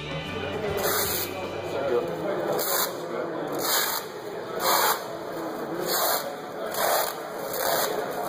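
Shoe-covered feet stepping on a sticky tacky mat. Each step gives a short peeling rustle, about once a second.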